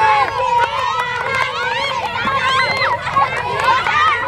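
A crowd of children shouting and calling out at once, many high voices overlapping with no break.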